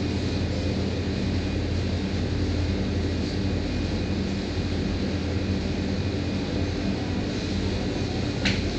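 Wall-mounted air-conditioner outdoor units running: a steady low hum with an even hiss above it.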